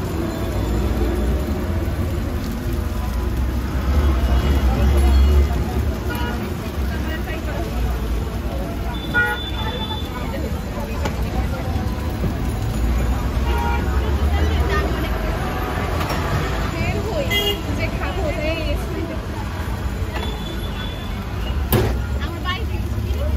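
Street traffic ambience: a steady low rumble of passing vehicles with brief horn toots and background voices.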